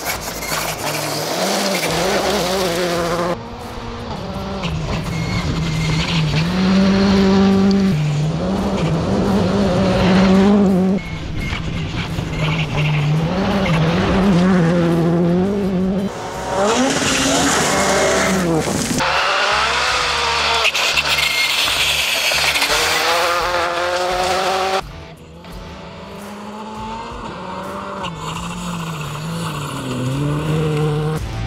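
Škoda Fabia rally car's turbocharged four-cylinder engine at full throttle on a gravel stage. Its pitch climbs and drops again and again with the gear changes. The sound shifts abruptly several times across separate passes.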